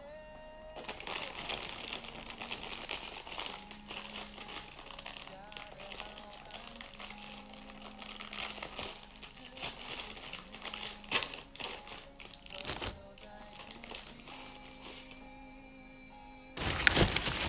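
Packaging crinkling and crackling in irregular bursts as it is unwrapped by hand, with quiet background music under it.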